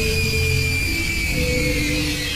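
Loud, harsh horror-style music sting: a high screeching tone held steady over a noisy wash, with low notes shifting and a rumble underneath, used as a jump scare.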